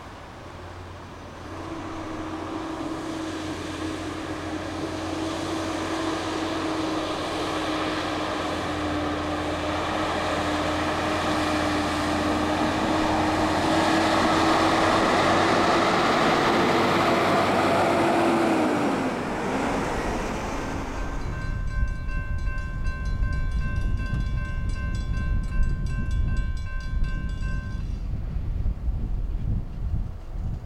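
A steady droning tone grows louder for most of the first twenty seconds, then drops in pitch as it passes. After that a railroad crossing bell rings for about six seconds with a quick, even beat, over wind rumbling on the microphone.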